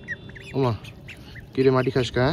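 Young ducks giving a few faint, short, high peeps as they feed, heard between a man's brief exclamations.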